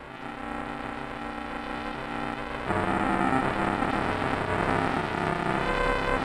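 Production-logo music run through audio effects and distortion. Held steady tones sound for the first couple of seconds, then a louder, denser passage comes in about two and a half seconds in.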